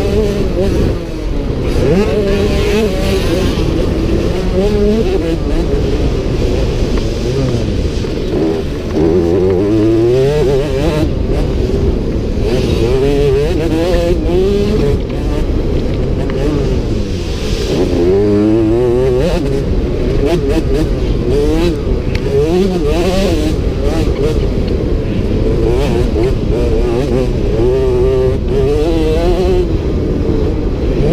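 Youth motocross bike engine heard close up from the bike itself, revving up and dropping back again and again as the rider accelerates, shifts and shuts off around the dirt track.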